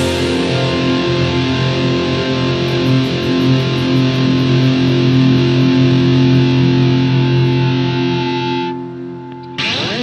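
Distorted electric guitar holding long sustained notes at the close of a progressive-metal solo. The sound thins out about nine seconds in, and a brief harsh burst comes just before the end.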